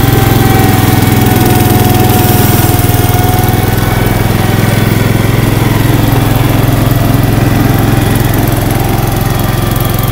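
Cub Cadet 149 garden tractor's Kohler single-cylinder engine running steadily, heard close and loud.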